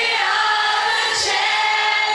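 Many voices singing together, a crowd singing along in unison with long held notes.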